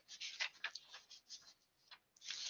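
Faint, irregular light clicks and rustles, about a dozen short ticks scattered over two seconds, with no voice.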